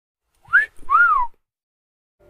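A two-note whistle in the pattern of a wolf whistle: a short rising note, then a longer note that rises and falls.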